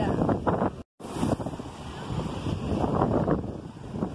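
Strong wind buffeting the microphone over the wash of sea waves. The sound drops out for an instant about a second in.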